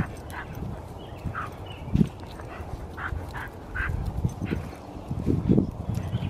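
Pit bull breathing hard from exertion in short, irregular huffs as it pulls on its leash, over low thuds.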